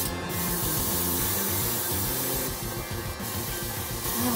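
Airbrush spraying paint thinned with coarse holographic glitter powder: a steady hiss of air and paint, with a stronger burst about two and a half seconds in. She hears the spray as the nozzle clogging with the glitter.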